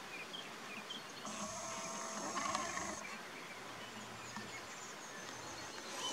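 Red deer stag roaring: one call about two seconds long, starting about a second in.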